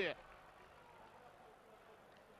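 Near silence: the broadcast sound falls to a faint hiss just after a man's voice trails off at the very start.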